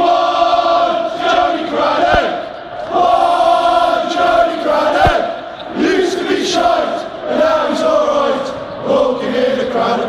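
Football crowd chanting in unison, many male voices holding long sung phrases of about two seconds each, three of them with short breaks between.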